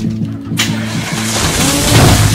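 Vehicle tyres skidding: a loud hissing noise that starts about half a second in and builds, over background music.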